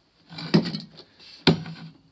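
Two sharp knocks about a second apart as the welder's earth cable and its DINSE connector are handled at the front of the machine, on a wooden bench.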